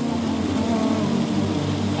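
An engine idling steadily nearby, a low even hum.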